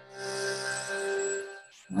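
A held, chanted 'om' trailing off into a fading steady tone, followed by a quick intake of breath near the end, just before the next 'om' begins.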